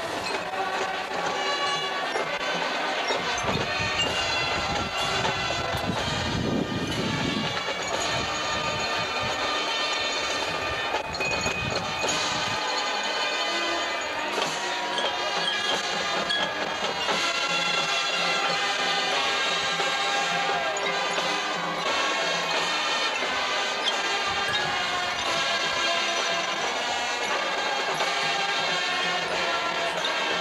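Marching band playing on a stadium field: sustained brass chords over drums.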